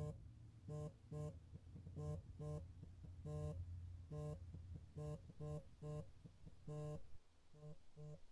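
A mobile phone buzzing on vibrate in short pulses, often two close together, each at the same pitch, over a low steady hum.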